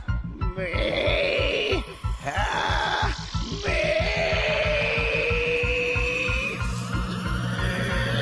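Dramatic anime score with a fast pulsing beat, under a man's long, drawn-out straining vocal as he charges up an energy attack, held in three stretches with the last and longest running most of the second half.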